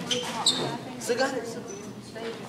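Voices chattering in a large, echoing room, with a couple of sharp knocks, one about half a second in and another about a second in.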